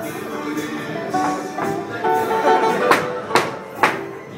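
Live flamenco music with guitar and a singing voice, punctuated in the second half by three sharp percussive strikes about half a second apart.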